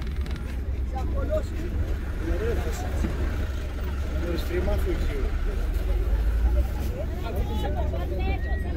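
Steady low rumble of a vehicle driving along, with voices talking over it and a few higher calls near the end.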